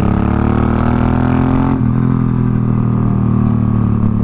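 A 2005 Suzuki Boulevard M50's V-twin engine running under way, with wind rush, heard from the rider's seat. The engine note breaks and resumes about two seconds in, as at a gear change while accelerating.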